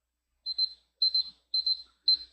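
Digital timer alarm beeping: short clusters of rapid high-pitched electronic beeps, about two clusters a second, starting about half a second in. It marks the end of a timed two-minute exercise period.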